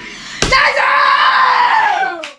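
The last notes of electric guitar and bass guitar die away, then there is a sharp slap about half a second in. A loud, high-pitched shout or scream of excitement follows, slowly falling in pitch for about two seconds.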